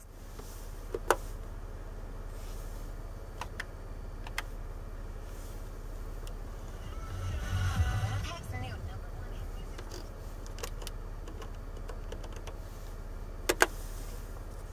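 Car radio sound swells briefly in the middle as its volume knob is turned up and back down, over a steady low cabin hum. Two sharp clicks sound, one about a second in and one near the end.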